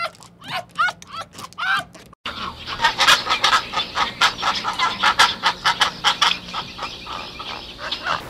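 Black-backed jackal giving short yipping calls, each one rising and falling, about three a second. About two seconds in the sound cuts out briefly and gives way to a flock of birds calling in a busy, rapid chatter.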